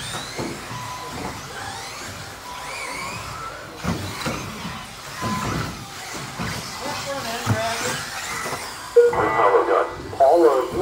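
Electric RC buggies at an indoor track, their motors whining in short rising and falling sweeps over a busy hall background with voices. A voice starts loudly about nine seconds in.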